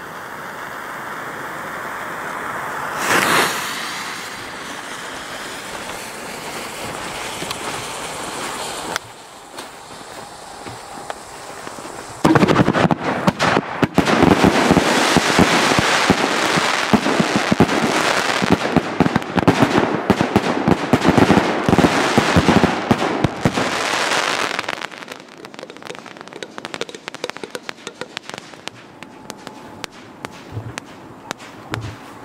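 A steady hiss with a brief louder swell about three seconds in, then about twelve seconds in a firework battery (cake) starts firing: a dense, rapid string of shots and crackling aerial bursts for about twelve seconds, thinning to scattered crackles near the end.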